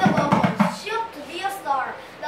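A tall hand drum struck several times in quick succession with the palms, the beats bunched near the start, with a child's voice over it.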